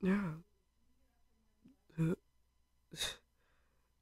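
Short non-speech vocal sounds from a sick-sounding person: a groaning sigh at the very start, a brief voiced grunt about two seconds in, and a breathy exhale about three seconds in.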